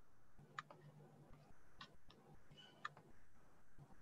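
Near silence with a faint low hum, broken by three or four faint, unevenly spaced clicks.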